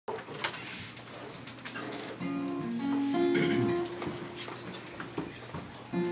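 Acoustic guitar playing ringing chords that begin about two seconds in, after a few small clicks and knocks.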